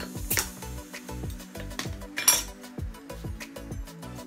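Metal bottle opener prying the crown cap off a glass beer bottle: two sharp metallic clinks, the louder one about two seconds in, over background music.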